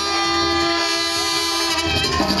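Banda brass section (trumpets, trombones, clarinets and tuba) holding one long sustained chord, played live through the PA, which breaks off just before the end.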